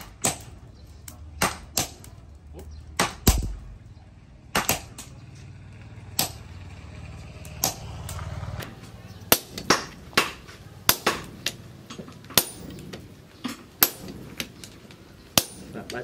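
Sledgehammer striking red-hot axle steel on an anvil as it is hand-forged into an axe head: sharp metallic blows at an uneven pace, some in quick pairs. The blows thin out in the middle, then come faster, one or two a second.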